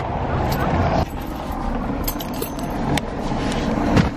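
Steady street and traffic noise with a few sharp clicks and knocks of someone opening a car door and climbing into the driver's seat.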